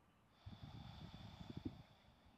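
A person's breath, about a second and a half long, blown out through the nose close to the microphone, the air buffeting the mic.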